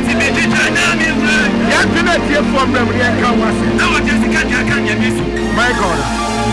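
A man's voice, loud through a microphone, over live worship music.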